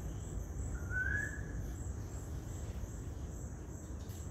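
Insects chirring in a steady high pulsing band, with a single short rising bird whistle about a second in, over a low steady rumble.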